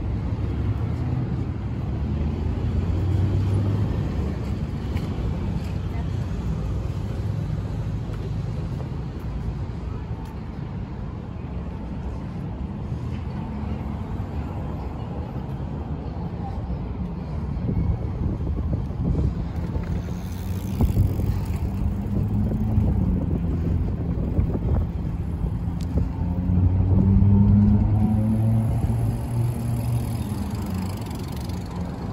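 Road traffic on a wide city avenue: car engines running and tyres passing in a continuous low rumble. Near the end an engine rises in pitch as a vehicle pulls away.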